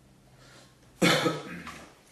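A man coughs once, sharply, about a second in, after a faint intake of breath.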